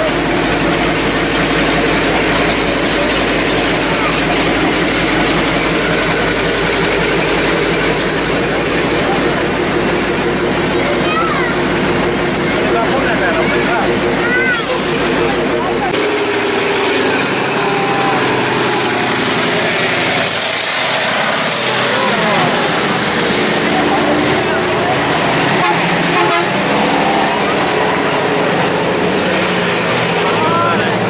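A World War II tank's engine running as it moves slowly past close by, a deep steady drone under crowd chatter. About sixteen seconds in the deep drone drops away, leaving crowd voices and lighter vehicle engine noise.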